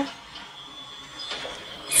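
Quiet room with a faint steady high-pitched whine, and a few soft, faint rustles about a second and a half in as cotton string is worked with a crochet hook. A voice clips the very start and the end.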